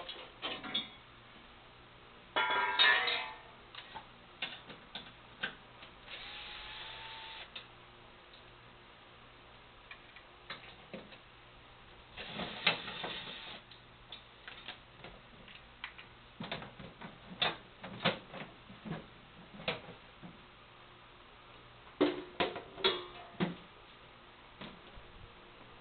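Scattered metal clicks and knocks of a tool and bolts as a pin deflector board is unbolted from a GS-X pinsetter. There is a short louder rattle about two and a half seconds in, and two brief steady whirring stretches, around six and twelve seconds in.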